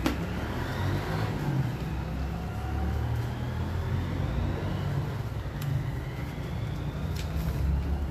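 A motor vehicle's engine running as a low rumble, with a faint whine rising slowly in pitch.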